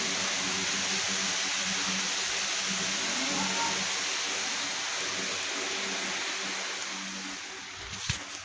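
Steady rushing noise with a faint low hum underneath, fading slightly near the end.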